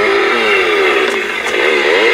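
Prop chainsaw's built-in sound effect: a recorded chainsaw engine revving, its pitch rising and falling a few times.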